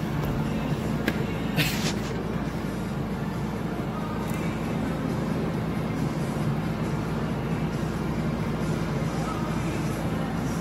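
Steady low hum of a window air conditioner, with a single click and a short hiss in the first two seconds.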